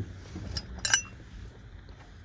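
Loose metal hardware being handled: a faint tick, then a single sharp metallic clink about a second in.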